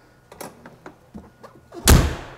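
Exterior compartment door of an ambulance's patient box, lined with diamond plate, being swung shut. There are a few light clicks as it moves, then one loud slam as it latches closed near the end.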